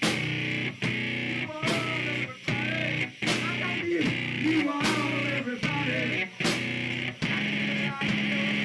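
Loud live music led by an electric keyboard, with sliding, wavering pitches over a steady hiss; the sound breaks off for an instant several times.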